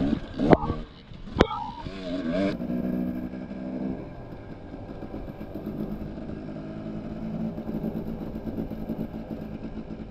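Dirt bike engine running on a rough trail, with several sharp knocks in the first second and a half. It then settles to a steady low-speed run, with a couple of short revs just after the change.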